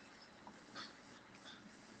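Near silence: faint room tone and line hiss in a pause between speakers, with one faint brief sound just under a second in.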